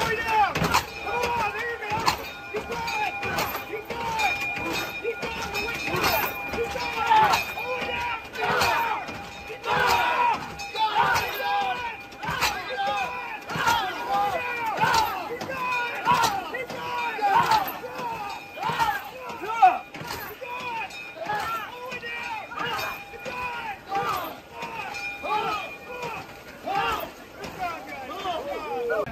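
A crew working a 19th-century hand-pumped fire engine (hand tub) hard: the pump brakes knock in a fast, uneven rhythm under constant shouting voices. A steady high tone runs through much of it.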